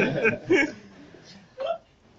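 A woman laughing and murmuring a few words, dying away within the first second, with one short voiced sound about a second and a half in.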